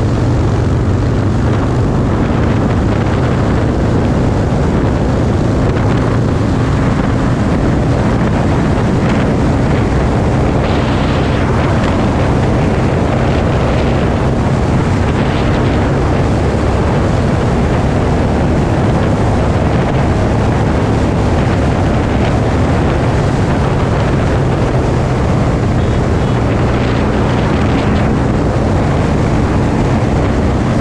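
Harley-Davidson Roadster's 1202 cc V-twin engine running with a steady note while riding at road speed, mixed with heavy wind noise on the helmet-mounted microphone.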